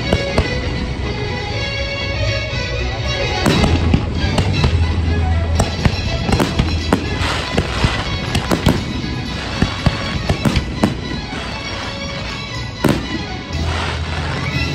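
Aerial fireworks bursting and crackling in quick succession, thickest from a few seconds in until near the end, with one strong bang just before the end, over a show's music soundtrack.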